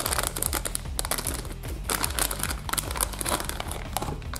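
Glossy plastic blind-bag packet crinkling continuously as it is squeezed and handled in the hands.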